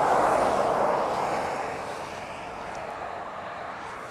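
Wind rushing past the microphone and tyre noise from an electric bike at speed under hard acceleration: a steady rush with no motor whine to be heard, loudest in the first second and slowly easing off.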